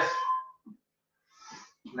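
A man's voice trailing off, then near silence and one short, sharp breath about a second and a half in, from someone winded by jumping exercises.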